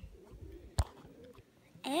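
A single sharp click about 0.8 s in, over faint low rumble and murmur, then a child's loud cry of pain starting right at the end.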